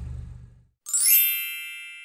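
A single bright chime sound effect strikes about a second in and rings as it fades, then cuts off abruptly just after.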